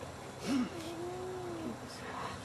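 A dog whining: a short rising-and-falling whine about half a second in, then one long, level whine of about a second.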